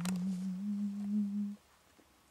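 A person humming one low, steady note that steps up in pitch twice and stops about a second and a half in. There is a brief click at the very start.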